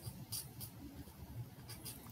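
Faint, short scratching or rubbing sounds, a few of them, over a low room hum.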